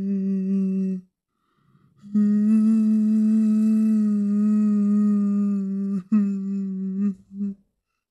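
A person humming one held, steady low note in three stretches: a short hum at the start, a long hum of about four seconds after a short pause, and a shorter one that ends a little before the close.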